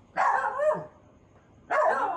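A dog barking briefly, a single short burst lasting under a second.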